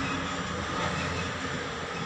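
Steady rushing background noise with a low hum underneath, even throughout.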